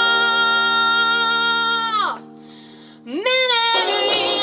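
Live rock band: a long held, slightly wavering note slides down and drops away about two seconds in. After a brief quieter gap, a quick rising swoop leads into a short note, and the full band comes back in near the end.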